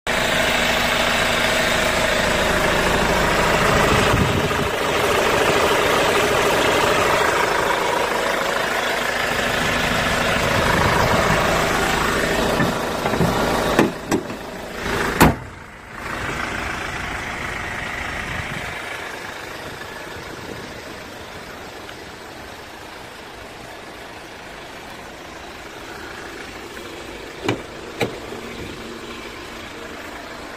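Hyundai Grand Starex van's engine idling steadily, heard loud close to the open engine bay. About halfway through a sharp slam, after which the idle sounds much quieter and muffled, as with the hood shut. Two short clicks near the end.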